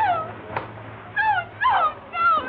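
A woman's short, high-pitched whimpering cries, three of them, each swooping down in pitch, as she struggles while held by the throat.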